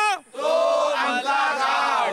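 A lone male voice finishes a sung line, then a group of men chants back together in unison, many voices overlapping in a loud call-and-response.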